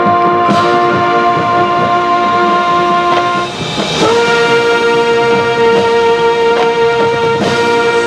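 High school marching band brass section holding a long sustained chord, which breaks off about three and a half seconds in. A new held chord follows, with a few percussion strikes through it.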